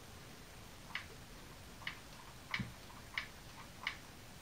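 Five light clicks from the hard plastic of a toy jet shifting in the hand, spaced somewhat unevenly about two-thirds of a second apart.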